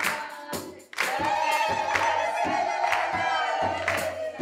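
Frame drums and hand-clapping keep a steady beat of two to three strokes a second. From about a second in, a woman's long, high, warbling ululation (zaghrouta) rises over them and holds for about three seconds.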